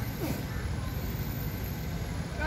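Low, steady rumble of wind buffeting the microphone on an open beach, with the sea behind it.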